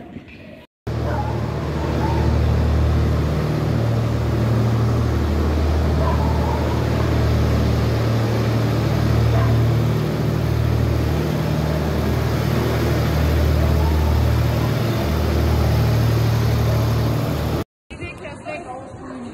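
Tractor engine running with a steady low drone, loud and close; it starts about a second in and cuts off suddenly near the end.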